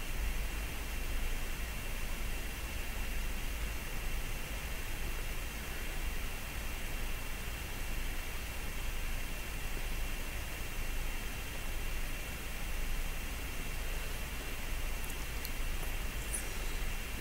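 Steady hiss with a low hum and a faint constant high whine: the background noise of a voice-over recording. No sound of the cloth rubbing comes through.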